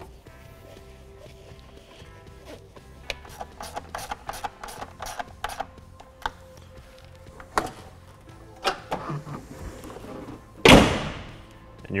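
A ratchet clicking in short runs as a 7 mm socket tightens the engine cover's rear bolt, then a pickup truck's hood slammed shut with one loud bang near the end, over background music.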